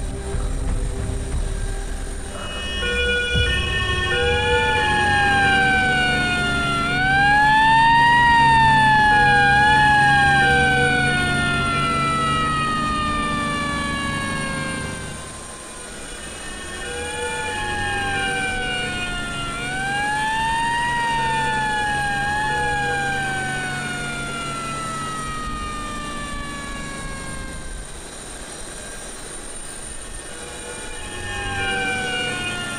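Ambulance siren wailing in two long cycles, each rising and dipping before a slow fall in pitch, over a low engine rumble.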